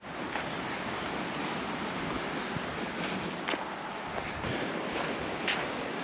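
Steady rushing beach ambience of wind and distant surf, with a few faint clicks.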